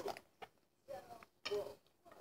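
Faint mouth sounds of two people biting into and chewing stuffed tortilla burritos: a few soft clicks and crunches, with a brief closed-mouth murmur or two.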